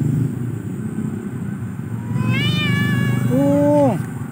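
Black-and-white stray cat meowing twice in the second half: first a high call that rises and falls, then a lower, drawn-out meow that drops off at the end, over a steady low rumble.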